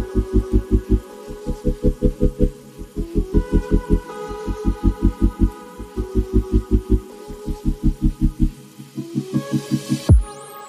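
Background music: a fast, even pulse of low notes, about six or seven a second, shifting pitch every second or so under held higher chords, with a short break in the pulse near the end.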